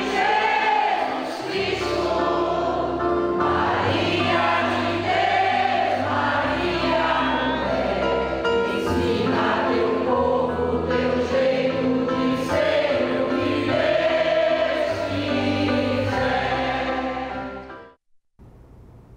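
Choir singing a hymn to Mary over a low instrumental backing, fading out sharply right at the end.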